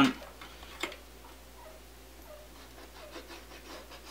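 Felt-tip marker drawn along a steel ruler on thin sheet-metal flashing: faint short squeaks from the tip on the metal, with a light tap just under a second in and a few soft clicks as the ruler and sheet shift.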